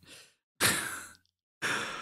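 A man sighing into a close microphone: a long breathy exhale about half a second in that fades away, then a shorter breath near the end.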